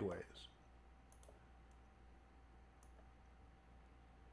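Near silence with a few faint, sharp clicks of a computer mouse, spread a second or so apart, over a low steady hum.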